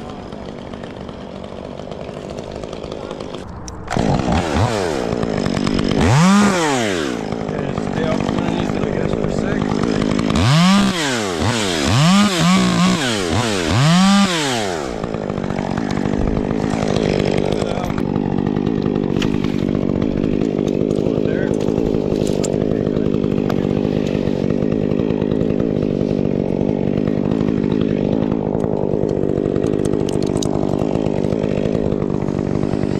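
Chainsaw idling, then revved in quick rise-and-fall bursts several times, then running steadily again.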